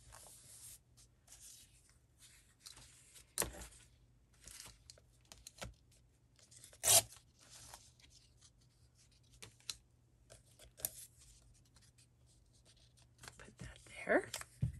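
Paper scraps rustling and sliding on a collage page under the hands, with a few light taps. The loudest is a sharp tap about seven seconds in, with a smaller one about three and a half seconds in.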